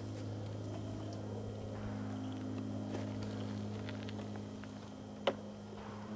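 A G-scale locomotive being backed by hand along the track onto a ramp carrier, over a steady low hum. A second, higher hum joins for about three seconds in the middle, and one sharp click comes near the end.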